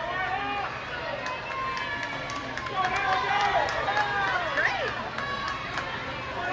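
Several people shouting and cheering over one another, calls rising and falling and busiest in the middle, over a steady wash of water splashing from swimmers racing butterfly.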